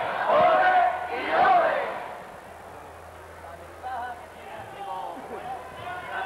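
A crowd of voices shouting and cheering, loudest in the first two seconds, then dying down to scattered voices.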